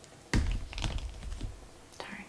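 A knock, then a run of light clicks and taps as a small perfume bottle and its plastic packaging are handled.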